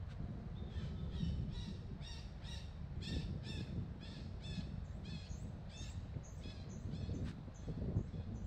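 Birds calling in the trees: a run of repeated calls, about two a second, starting about a second in, with short high chirps near the end. A steady low rumble runs underneath.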